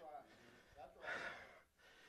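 Near silence, with one faint breath from a man about a second in.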